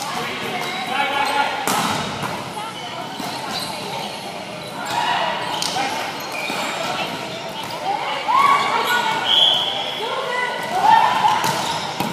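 Indoor volleyball rally in a large hardwood-floored gym: a few sharp smacks of the ball being hit or landing on the floor, amid players' shouts and calls.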